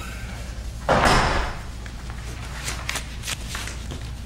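Papers being handled on a meeting table: a sudden short rustling thump about a second in, then several faint clicks and rustles.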